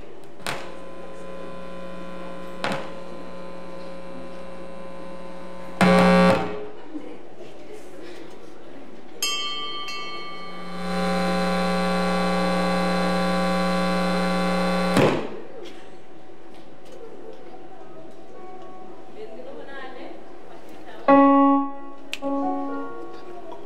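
Electronic keyboard playing long, steady organ-like notes: one held from about half a second in to about six seconds, a louder one from about nine to fifteen seconds, and a short loud note near the end.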